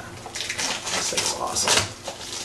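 Crinkling and tearing of a mystery-mini blind box's cardboard and foil wrapper being opened by hand, in several rustling surges.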